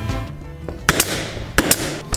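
Background music fading out, then sharp knocks on the plywood ramp in two quick pairs, a little over half a second apart.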